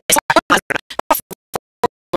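Stuttering digital audio glitch: the lecturer's voice is chopped into rapid short fragments, about eight a second, with dead silence between them. About a second in, the fragments thin out to sparse clicks.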